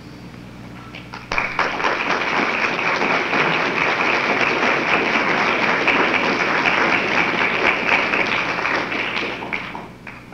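Audience applauding, starting suddenly about a second in and dying away near the end.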